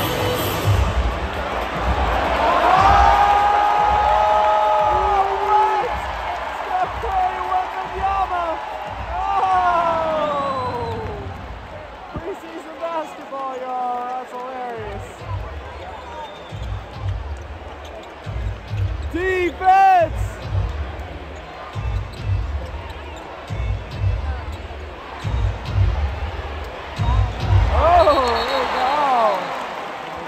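Basketball game heard from the stands: repeated low thumps of a ball bouncing on the hardwood court, with arena music and voices over a steady crowd noise.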